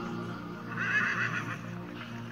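Background pop music, with a horse whinnying briefly about a second in, a short quavering call louder than the music.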